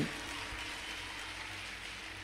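Faint, steady hiss of background noise from a large crowded hall.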